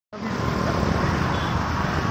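Steady road traffic noise at a signalled junction: motor vehicle engines running, mostly low-pitched, starting a moment into the clip.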